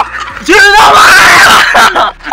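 A man's loud wordless yell. It sweeps up in pitch at the start, about half a second in, and is held for over a second.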